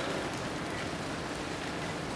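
Steady, even background noise of a large hall, with no voice standing out.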